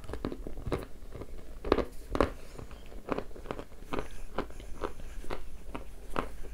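Close-up chewing of a dry piece of edible clay ('ryzhik'), a run of short crisp crunches about two a second as the dry clay is bitten and ground between the teeth.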